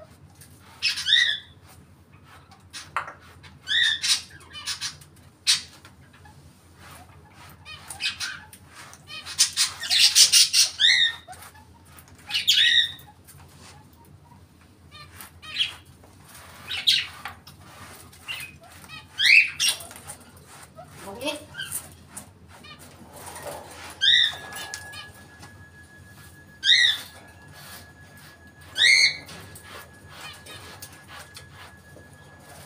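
African grey parrot giving short rising whistles, repeated every two to three seconds, with a louder, harsher burst about ten seconds in. A faint steady tone comes in about two-thirds of the way through.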